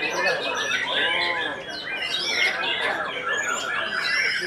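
White-rumped shamas (murai batu) singing in competition: a dense, unbroken run of rapid whistles and chirps from several birds overlapping.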